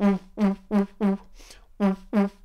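Beatboxed lip synth: short, punchy 'oo' tones pushed through tightly rounded lips, all at one steady pitch. Four come in quick succession, then a fifth after a short pause.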